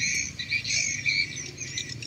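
Insects chirring in a steady, high-pitched chorus.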